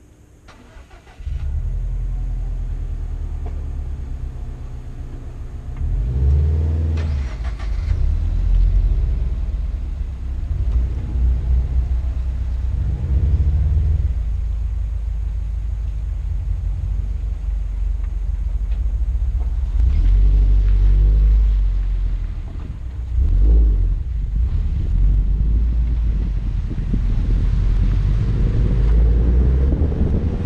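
A car engine starting about a second in, then idling with several brief revs. Near the end the car pulls away and road and wind noise build.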